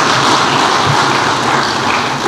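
Audience applauding, a dense steady clatter of clapping that begins to thin out near the end.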